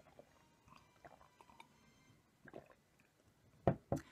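A person drinking water from a glass, with faint gulping and swallowing sounds, then two sharp knocks close together near the end.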